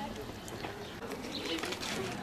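Faint outdoor background of distant voices, with a bird calling, likely a pigeon cooing.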